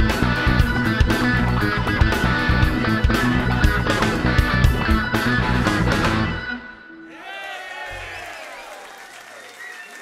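Live blues-rock band playing the last bars of a song, with electric guitar, bass, drums and a KeyB Duo organ. The song ends about six and a half seconds in, and quieter audience applause and cheering follows.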